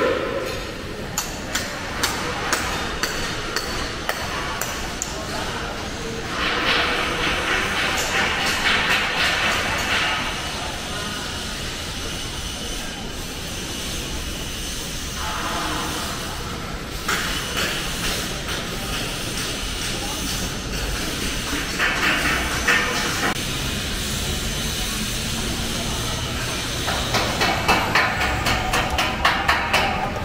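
Construction-site sounds: repeated short knocks and taps, several stretches of dense noise, and indistinct voices of workers.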